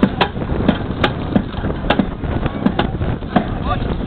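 Repeated sharp knocks, irregular at about two or three a second, from a firefighter working a metal frame competition apparatus. Short shouts of a voice break in near the end.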